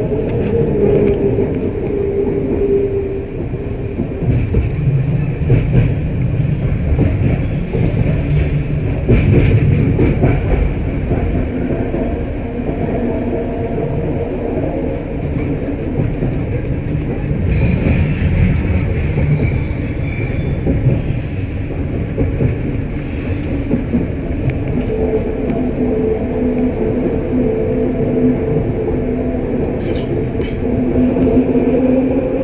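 Detroit People Mover automated train, a linear-induction-motor car on steel rails, running along its elevated guideway, heard from inside the car. There is a continuous wheel-and-rail rumble, with a steady hum near the start and again over the last few seconds.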